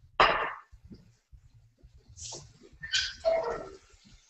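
A paper towel rustling and crinkling as it is lifted off a bowl and put down, in a few short bursts.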